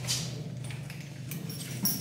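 Faint clinks and light jingles from a horse's bridle fittings as it is handled and put on at the horse's head, over a steady low hum.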